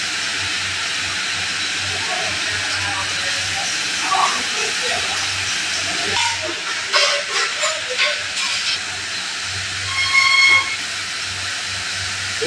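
Chicken pieces deep-frying in a wok of hot oil: a steady, loud sizzle throughout. A few sharp knocks come around seven to eight seconds in, and a short, high whistle-like tone about ten seconds in.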